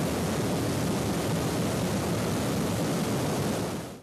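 Brown floodwater rushing through the arches of a stone diversion weir: a steady rush of water that fades out near the end.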